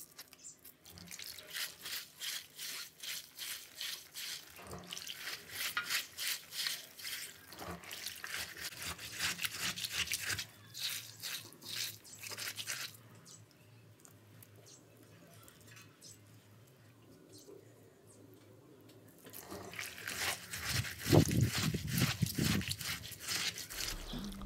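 Steamed soybeans being rubbed between wet hands in a plastic bowl of water: quick, rhythmic wet rubbing and sloshing, in two spells with a quieter pause of several seconds in the middle. The rubbing loosens and strips the hulls from the beans.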